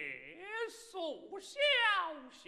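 Male Kunqu opera voice, unaccompanied, delivering a line in long drawn-out syllables whose pitch slides steeply down and back up, in the stylized Kunqu manner.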